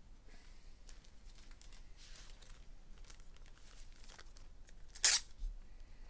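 Trading-card packaging being handled: light rustling and small crinkles, then one short, loud rip of wrapper about five seconds in, with a smaller one just after.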